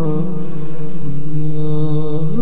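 Background vocal chanting: long held notes sung smoothly, with a slow step in pitch shortly after the start.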